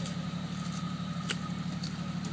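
Jeep Cherokee's engine running steadily at a low idle, with a single sharp click a little past halfway.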